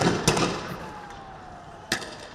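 Riot-control guns firing rubber-coated bullets and tear gas: two sharp shots about a quarter second apart at the start, their echoes fading, then another shot near the end.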